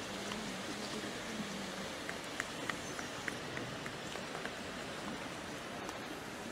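Steady hubbub of a large outdoor crowd, with a few faint ticks in the middle.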